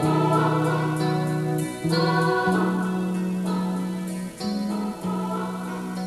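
Band music without singing: drums with regular cymbal strokes and keyboards under a held melody line whose notes change every second or so.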